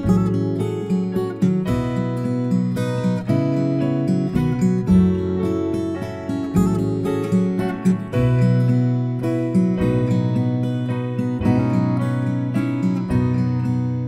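Strummed acoustic guitar playing the instrumental introduction of a slow song, steady chords with sustained low notes beneath.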